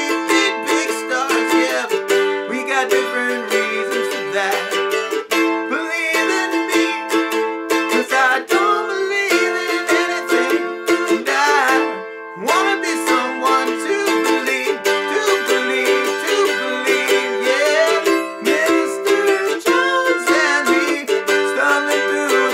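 F-style mandolin strummed in a sixteenth-note pattern through Am, F and G chords, moving to C near the end, with a man singing along.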